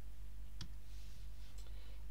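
A single computer mouse click about half a second in, as the lesson's on-screen page is advanced, over a steady low electrical hum.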